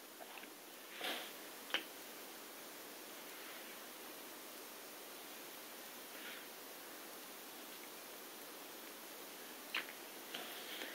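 Quiet room hiss with faint handling noises as a small nail glue bottle is worked over a fingernail: a soft rustle about a second in, a sharp click just after, and a couple of fainter ticks later on.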